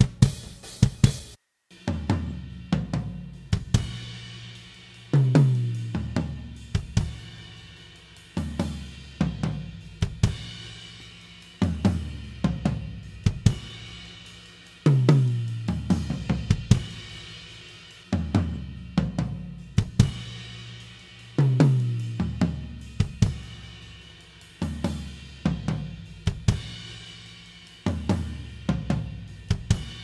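Multitrack recording of a live drum kit playing back through close mics and overheads: kick, snare, hi-hat and cymbals, with tom hits whose low ringing falls in pitch, recurring about every three seconds. The close mics are time-aligned to the overheads by delay, so the kit is heard phase-aligned. The sound drops out briefly about a second and a half in.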